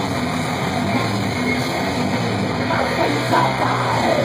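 Live metal band playing loud, with distorted electric guitars over bass and drums.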